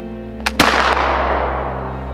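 Flintlock muzzleloading rifle firing black powder. A short snap of the lock and priming pan comes about half a second in, and the main charge goes off a split second later, its report dying away over more than a second.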